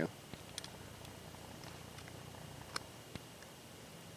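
Faint clicks and taps from handling the small metal parts of a Speedy Stitcher sewing awl, with a sharper click about three seconds in, over a low steady background hum.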